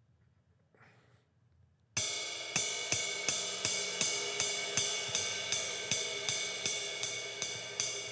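Near quiet for about two seconds, then a jazz ride cymbal struck with a drumstick in a fast swing ride pattern, a steady string of crisp pings over a continuous ringing wash. It is played relaxed, at a tempo the drummer says he can keep up all day.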